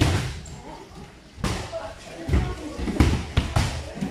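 Wrestlers' bodies landing on the padded wrestling mats: a run of heavy, deep thuds, the loudest about three seconds in, with voices in the background.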